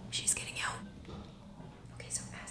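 A woman whispering close to the microphone, mostly in the first second, over a low steady hum.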